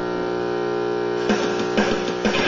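Electric guitar chord left ringing, then several quick picked strokes starting a little over a second in.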